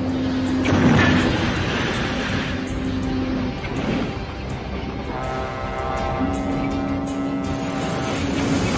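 Film soundtrack: music with long held notes, a chord swelling in about halfway through, mixed over vehicle noise. There is a loud rush of noise about a second in.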